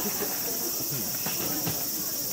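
A steady, high-pitched chorus of cicadas from the surrounding trees, over the low murmur of passers-by talking.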